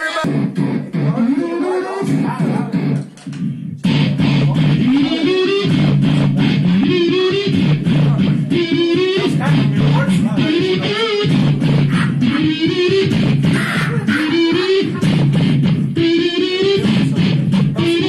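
A man's voice run through a guitar distortion pedal, imitating an electric guitar riff: a loud, distorted buzzing line with a rising slide repeated every second or two. It starts thinner and becomes full and continuous about four seconds in.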